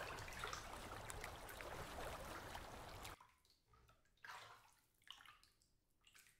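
Faint water sounds from a child wading barefoot in shallow lake water: a steady light wash for the first three seconds, which cuts off suddenly, then a few soft splashes about a second apart.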